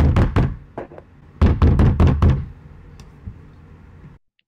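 Knocking on a door: a quick run of knocks, then a second, longer run about a second and a half in.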